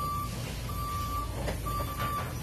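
Raymond stand-up forklift's backup alarm beeping: a steady single-pitched beep about once a second, three times, over a low background rumble.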